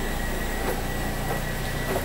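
Steady low rumble and hiss of background room noise in a large indoor space, with a couple of faint taps.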